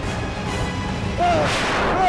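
A dramatic sound-effect boom hits about one and a half seconds in, over background music with a low rumble, just as a man lets out an anguished cry.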